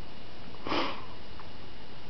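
A single short puff of breath, about a third of a second long, just under a second in.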